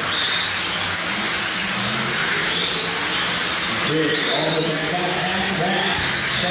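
Radio-controlled model sprint cars racing on a dirt oval: high-pitched motor whines rising and falling as the cars accelerate and pass, over a steady hiss of tyres on dirt.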